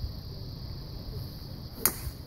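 A golf driver striking a teed golf ball: one sharp click near the end, over a steady low rumble.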